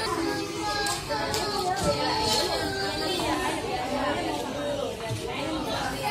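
Hubbub of many young children and adults talking and calling out at once, overlapping voices with no single one standing out.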